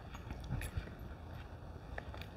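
Steady low rumble of wind on the microphone, with a few faint soft knocks and clicks about half a second in.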